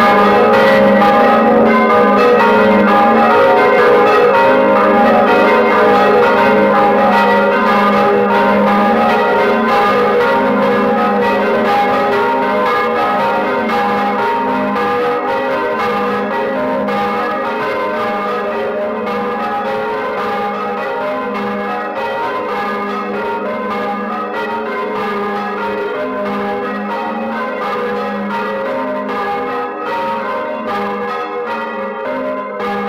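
A Bolognese-style 'quarto' of four medium-weight bronze church bells, hung in a wooden frame, rung in a 'doppio', heard close up inside the belfry: strokes follow one another quickly and their tones overlap into a dense, continuous ringing that slowly gets a little quieter. The ringer describes the bells as of quite poor quality.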